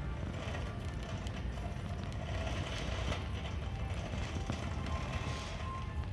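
Shopping cart rolling over a hard store floor, its wheels making a steady low rumble, with music playing in the background.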